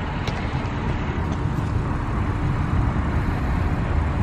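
Steady low rumble of a 2013 Audi S4's supercharged 3.0-litre V6 idling close by.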